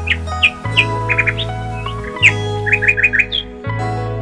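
Bird chirps, short high calls in quick runs, over background music of sustained chords.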